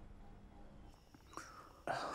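Quiet background with a faint low hum, then a soft breathy sound a little past halfway, and a man starting to speak just before the end.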